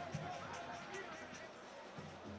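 Faint, steady crowd noise from a football stadium on a TV broadcast, with faint music.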